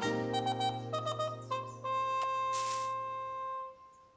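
Light instrumental cartoon underscore of stepping notes over a held bass, settling into a long held note that fades out near the end, with a brief swish about two and a half seconds in.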